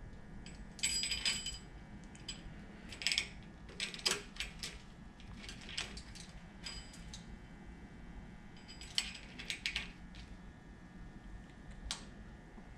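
Steel timing chain, cam sprocket and ratchet clinking as the cam sprocket is turned by hand to line up its timing mark, in a handful of light, scattered metallic clinks, each with a brief bright ring.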